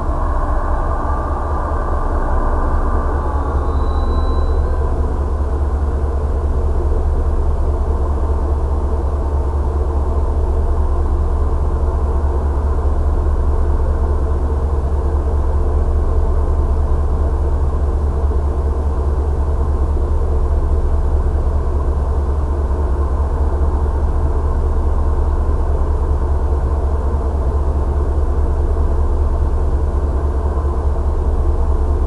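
Steady low rumble of an MBTA commuter train of bilevel coaches slowing to a stand, heard from inside a stopped vehicle, with a faint tone that fades in the first few seconds.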